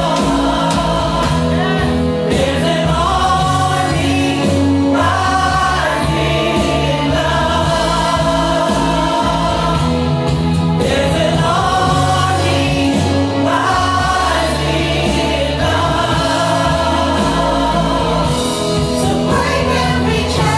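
Gospel worship song: several women singing together into microphones, holding long notes over steady instrumental accompaniment.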